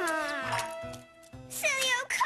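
Cartoon preschool boy crying and wailing in a tantrum: a long wavering cry, a short break about a second in, then a high falling wail near the end, over background music.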